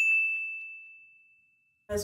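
A notification-bell 'ding' sound effect: one struck, high ringing tone that fades away over about a second and a half.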